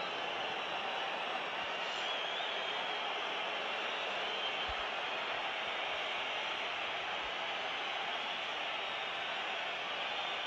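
Large football stadium crowd making a steady, even wash of noise as a penalty kick is about to be taken.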